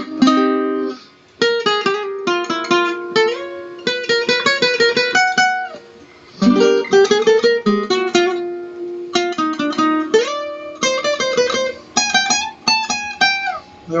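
Requinto, the small nylon-string lead guitar of a romantic trio, playing a fast interlude of quick plucked single-note runs and chords. The playing breaks off briefly about a second in and again around six seconds in.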